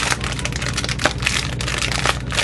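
Hello Kitty rice cracker squishy squeezed repeatedly through its plastic bag, giving a dense crackling, with one sharper crack about a second in. The crackle comes from the toy's built-in crackly feature, like the crackle of the chocolate bar squishies.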